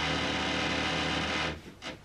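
A motor-driven appliance running with a steady humming drone, which cuts off about one and a half seconds in.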